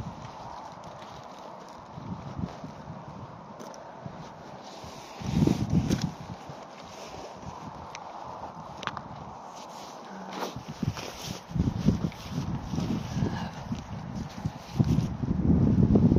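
Footsteps through dry bracken and scrub, in bursts of heavy steps about five seconds in and again from about ten seconds on, heaviest near the end, with a few sharp cracks.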